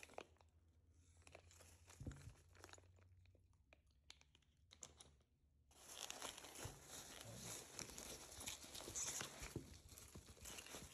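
Foam packing peanuts and bubble wrap rustling as a hand digs through them in a cardboard box. The sound is faint and sparse at first, then a steady rustle of many small crackles from about six seconds in.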